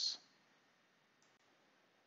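Near silence: room tone, with two faint computer mouse clicks close together a little over a second in.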